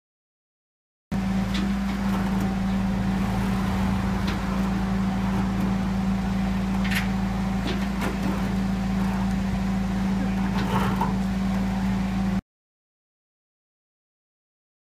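Diesel engine of a flatbed recovery truck running steadily, with a constant low hum and rumble and a few light clicks and knocks over it. It starts about a second in and cuts off suddenly near the end.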